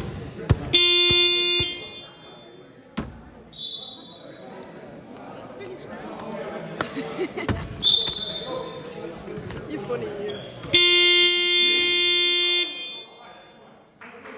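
Game horn of a basketball scoreboard sounding twice in a large hall: a blast of about a second, about a second in, and a longer one of about two seconds near the end, both one steady buzzing tone. A ball bounce is heard at the start, and two short high whistle-like tones come between the blasts.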